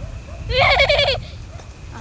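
A single loud bleat, a quavering call lasting about two-thirds of a second, starting about half a second in.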